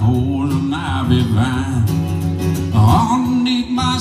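Live country song: acoustic guitar playing with a man singing, his voice drawn out in held notes between the lyric lines.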